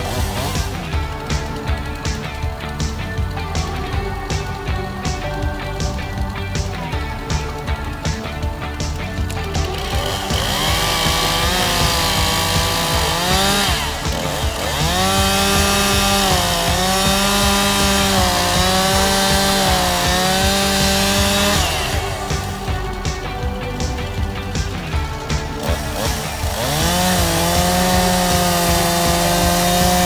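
Stihl two-stroke chainsaw revving up about a third of the way in and cutting into a dead tree trunk at full throttle. Its pitch sags and recovers under load, and it eases off for a few seconds near two-thirds of the way through before biting in again. Background music with a steady beat is heard over the first third.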